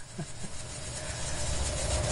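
A swelling whoosh transition sound effect: a rumbling rush of noise that grows steadily louder.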